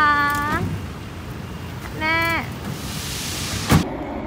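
A woman's voice calling out in drawn-out, high-pitched Thai syllables, twice, with a steady low hum of outdoor traffic behind. A hiss builds near the end and is cut off by a sharp click.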